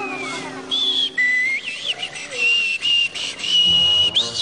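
A whistled imitation of a belted kingfisher's mating call: high whistled notes that jump between pitches with a few quick warbles, then settle into a held, slightly broken note.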